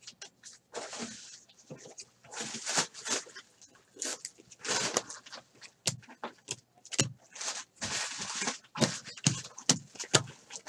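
Stack of trading cards being flipped through by hand, cards sliding over one another: several swishing slides with sharp clicks and snaps of card edges between them.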